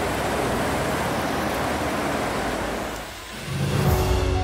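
Steady rushing noise of a long wooden dugout boat speeding upstream through river rapids: water and wind rushing past the boat. The noise dips about three seconds in, and background music begins near the end.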